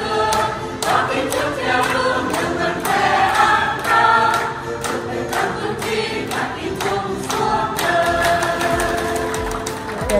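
A mixed church choir singing a celebratory hymn together, clapping their hands in a steady beat of about two claps a second.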